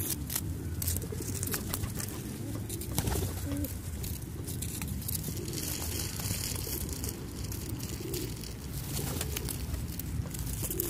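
Low cooing from a flock of feral pigeons gathered close together while feeding, with scattered short taps and clicks throughout.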